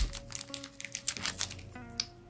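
Small clear plastic baggie crinkling as a LEGO minifigure torso is pulled out of it, with a sharp knock at the start and the crinkles thinning out after about a second. Faint background music runs underneath.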